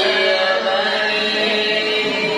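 Male voices chanting salawat dulang, the Minangkabau devotional sung verse, in a long held, wavering melodic line. The brass trays are not being struck here.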